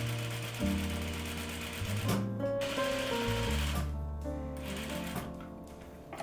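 Industrial flatbed lockstitch sewing machine running ease stitches around a muslin sleeve cap, in short runs with a few brief stops. Background music with held notes and a bass line plays throughout.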